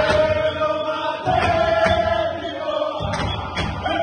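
A group of footballers singing a chant together, the voices holding a long note. Sharp hits recur in a steady beat underneath.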